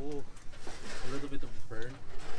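A pigeon cooing: a few short, low calls.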